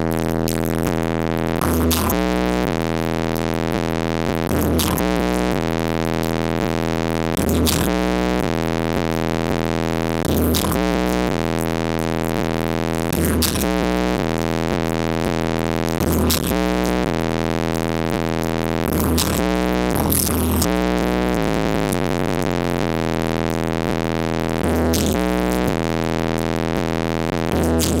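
Bass-heavy electronic music played loud through a car stereo driven by an AudioQue HDC318-A 18-inch subwoofer on an AQ2200D amplifier wired at half an ohm. A sustained synth chord runs under a deep bass figure that changes and hits again about every three seconds.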